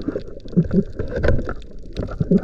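Underwater noise heard through a submerged camera: a steady low rumble with scattered clicks and knocks as the gloved hand works among the rocks, and two short muffled vocal sounds a little over half a second in.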